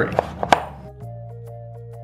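Chef's knife chopping through pumpkin flesh onto a wooden cutting board: several quick chops in the first half-second, the last the loudest. Background music comes in about a second in.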